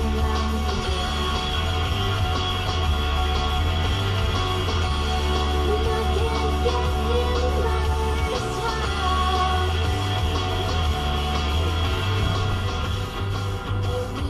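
Rock music with singing, playing on a car radio.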